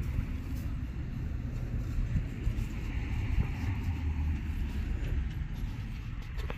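Wind buffeting the microphone outdoors: a steady, uneven low rumble with a faint hiss above it, and no distinct events.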